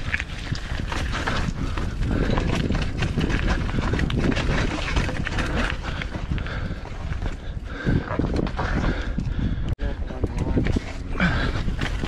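Mountain bike clattering and rattling over rough rock on a technical downhill trail: a constant run of irregular knocks from the tyres, suspension and frame over a low rumble. The sound drops out for an instant about ten seconds in.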